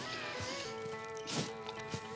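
Background music: sustained chords that change once, about two-thirds of a second in.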